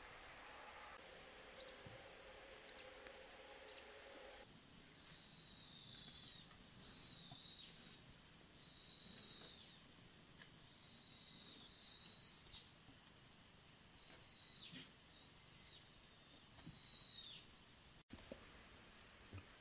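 Faint high-pitched bird calls: a few short chirps, then a row of calls each under a second that end in a downward hook, repeated every second or two.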